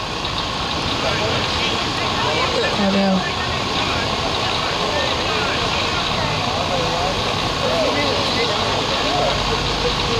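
Scattered distant voices of people around a football field, overlapping calls and talk, over a steady rumbling background noise.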